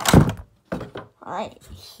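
One loud thunk near the start as the model airliner's packaging is handled: the clear plastic tray coming out of its cardboard box.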